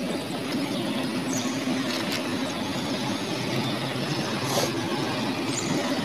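A motor running steadily, an even engine-like drone.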